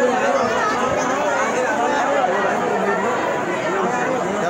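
Crowd chatter: many people talking at once close around the microphone, a dense mix of overlapping voices with no single voice standing out.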